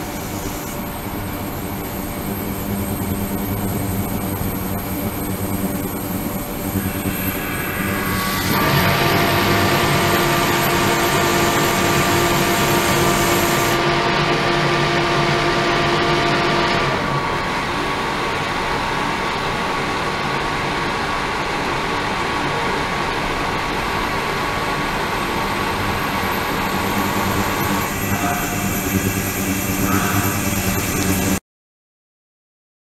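Ultrasonic tank running with water circulating through it: a steady rushing noise with faint steady tones. About eight seconds in it gets louder and several steady hums join. Most of them drop away about seventeen seconds in, leaving one tone that stops near the end.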